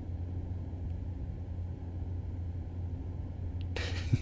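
Steady low rumble of road and engine noise inside a moving car's cabin at highway speed.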